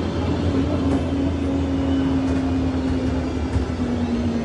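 Steady running drone inside a moving passenger vehicle: a low hum with a single tone that slowly sinks in pitch over a wash of road-and-motor noise.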